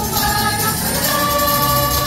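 A group of carolers singing a Christmas carol together, holding a long note through the second half.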